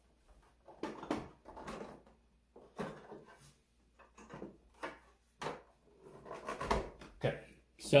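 Hard plastic parts of a Roomba self-emptying base knocking and clicking as a component is pressed and adjusted to sit flush in its housing: a series of short, irregular knocks.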